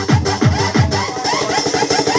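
Electronic dance music played from vinyl on a DJ's turntables, driven by a steady kick drum. About halfway through, the kick drops out for a rapid stuttering passage.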